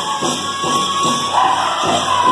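Powwow drum group playing: a big drum beaten in a steady beat about twice a second under high-pitched group singing.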